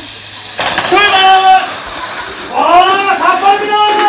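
Drawn-out voices calling out twice, about half a second in and again from about two and a half seconds, over a steady high hiss.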